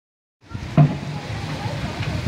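Steady rush of lazy-river water flowing around inflatable tubes, with a single knock shortly after the sound begins.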